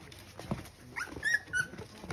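Three-week-old American Bully puppies whimpering: a rising squeak about halfway through, then two short high-pitched whines, over soft scuffling as the puppies crawl about.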